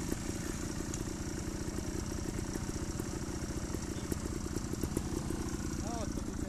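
Trials motorcycle engine idling steadily, a close, even low pulse with no revving.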